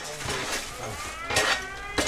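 An air raid siren winding up, its wail rising steadily in pitch from about halfway in: the warning of an incoming air attack.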